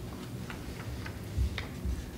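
Sheets of paper being handled at a table: a few faint, irregular clicks and a couple of dull thumps over a low room hum.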